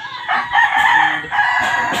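Rooster crowing: one long, loud crow that starts just after the beginning and lasts about a second and a half.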